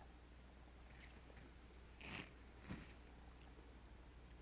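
Near silence: room tone, with two faint short mouth sounds a little after two seconds in as a paper taste-test strip is tasted.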